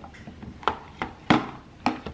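Light taps and clicks of fruit pieces and fingers against a plastic bento lunch box as fruit is picked out and placed in it: a few sharp knocks, the three loudest about half a second apart, with fainter clicks between.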